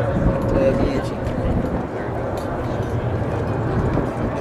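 Boeing 727's three Pratt & Whitney JT8D turbofans as the jet climbs away: a steady, loud low rumble of jet engine noise, with people talking nearby.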